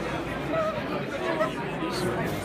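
Background chatter of several voices in a large hall, no single voice clear.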